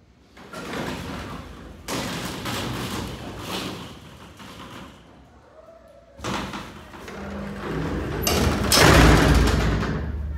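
Freight elevator doors and wire-mesh car gate closing: several stretches of metal rattling and scraping, building to the loudest thud and rumble near the end.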